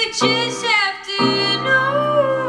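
A woman singing a slow song live, accompanied by piano chords; a new chord is struck about a second in and held under her voice.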